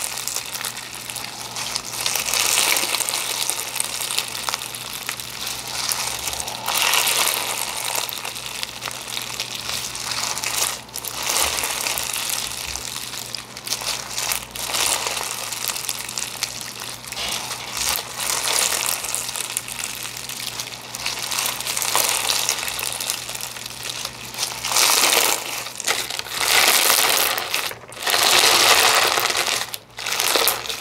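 Crunchy lava rock slime with a clear base being stretched, squished and pressed by hand, crunching and crackling continuously, louder near the end as it is pressed down.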